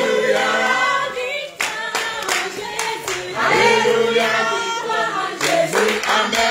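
A group of people singing a worship chorus unaccompanied, with hand claps.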